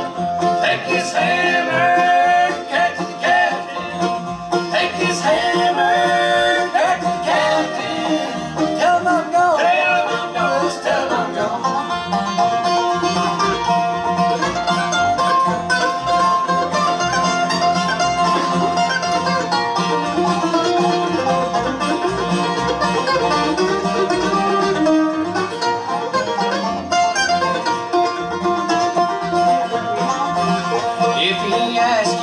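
Bluegrass band playing live on five-string banjo, mandolin, acoustic guitar and upright bass.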